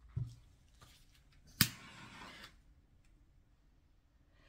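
A dull thump, then a sharp click followed by about a second of soft hissing rustle: handling noises at a work table.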